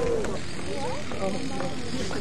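People talking in the background, in short snatches, over a low steady rumble that drops away about half a second in.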